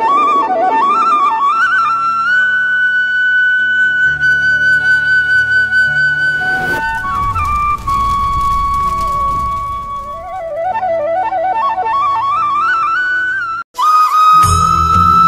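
Background music led by a flute: an ornamented melody with quick runs and long held high notes over a sustained accompaniment. About halfway through, a rising whoosh marks a transition.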